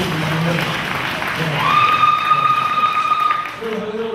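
Audience applause, an even clapping noise, with one high held note lasting about two seconds in the middle. The speaker's voice continues faintly under it at first.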